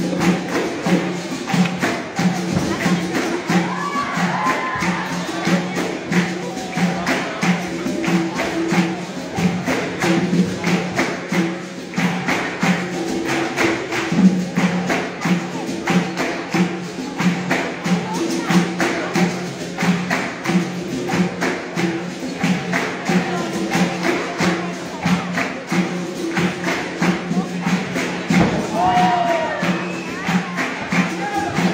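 Capoeira roda music: berimbaus playing a steady, repeating rhythm, with the jingles of a pandeiro and the beat of an atabaque drum.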